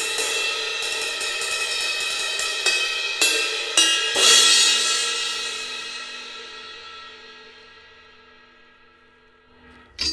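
Sabian cymbal on a straight stand struck repeatedly with a drumstick, about ten hits over the first four seconds, then left to ring and fade slowly for five seconds while it is being tested by ear. A short metallic clank near the end as a cymbal is handled on its stand.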